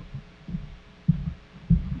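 Two dull, low thumps about half a second apart, a little over a second in.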